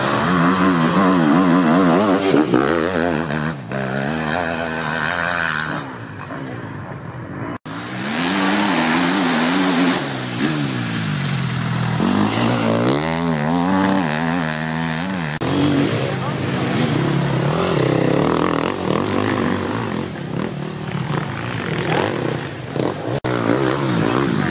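Enduro motorcycle engines revving hard on a dirt trail, their pitch repeatedly climbing and dropping with throttle and gear changes. The sound breaks off abruptly and starts again about every eight seconds, as one pass gives way to the next.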